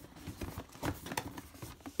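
Faint rustling of a cardboard box being handled and worked open, with a few small taps and clicks of fingers on the card.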